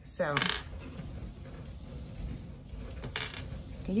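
Strong wind gusting outside a window, with a sharp clink about three seconds in.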